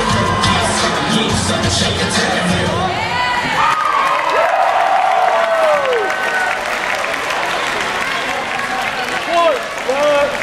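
Dance music with a heavy beat plays over a gym PA and cuts out after about three and a half seconds. A crowd then cheers and whoops for the rest of the time.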